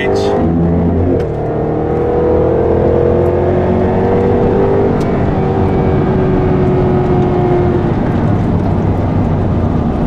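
2014 Jaguar XKR's supercharged V8 engine, heard from inside the cabin under way on track. After a brief dip about a second in, its note rises for a few seconds, then holds steady and eases slightly, with road noise throughout.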